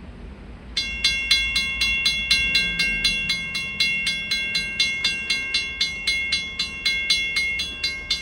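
Railroad grade-crossing warning bell starting about a second in and ringing rapidly and evenly, about four strikes a second, as the crossing signals activate for an approaching freight train.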